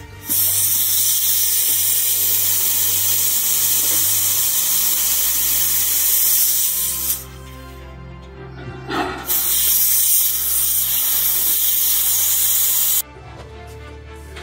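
Compressed air hissing as it is bled from the air chamber of a well pressure tank through a hose on its Schrader valve, in two long releases of about seven and four seconds. Air is being let out to bring the tank's pre-charge down to about 23 psi, just below the pump's cut-in pressure.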